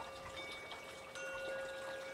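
Chimes ringing softly: several clear tones that sound one after another, a new set about a second in, over a steady tone and a faint hiss.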